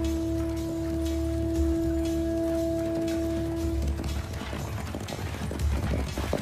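Film score of long sustained notes over a low drone, which fades about four seconds in. Horses' hooves then come in galloping on a dirt track as a run of irregular knocks.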